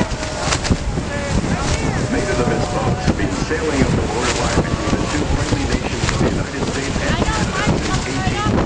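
Gusting wind buffeting the microphone over a steady rush of churning river water, with scattered short calls or voices on top.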